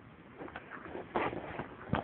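Faint handling noise from a phone being turned around in the hand: a few soft knocks and short rustles, the plainest a little past one second in and again near the end.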